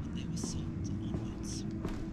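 Hushed, whispered voices with short hissing 's' sounds, over a steady low rumble and a constant hum.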